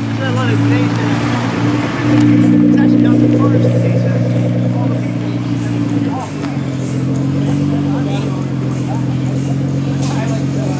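Nissan GT-R's twin-turbo V6 running at low revs as the car pulls away at walking pace, its note stepping up louder about two seconds in and settling lower about six seconds in. Crowd voices chatter around it.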